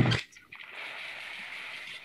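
Plastic raffle balls tumbling and rattling inside a clear plastic drum as it is shaken. It is a steady rushing clatter that sets in about half a second in.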